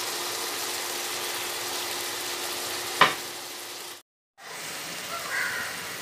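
Onions and green chillies frying in a clay pot, a steady sizzling hiss. A single sharp knock about halfway through, and the sound drops out for a moment shortly after.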